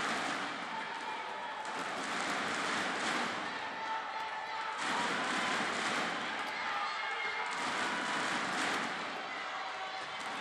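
Large arena crowd shouting and cheering steadily, swelling and easing in waves, through a tense badminton rally.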